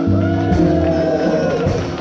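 Live blues band playing an instrumental passage led by piano, with sustained low notes beneath and a melody line that slides up and down in pitch.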